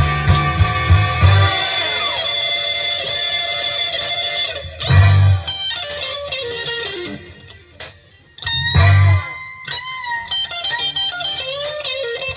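A blues record plays on a turntable: an electric guitar solo with bending notes. Heavy bass-and-drum hits come about a third and two thirds of the way in, with a brief quieter stretch just before the second.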